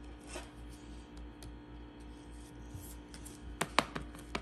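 A trading card being handled and slid into a rigid plastic toploader: faint rubbing and scraping of card against plastic, with a few sharp clicks near the end.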